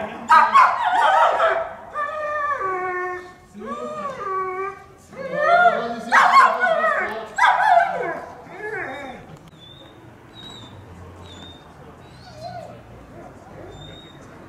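Police service dog whining and yelping, a run of drawn-out, wavering high-pitched cries over the first nine seconds or so, then much quieter with only faint brief whimpers.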